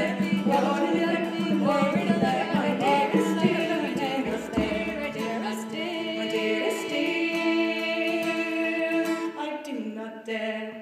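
Women's voices singing a slow song in harmony over a steady low held note; the song ends just before the end.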